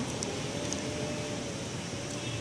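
Steady background hum and hiss, with a faint held tone from about half a second in.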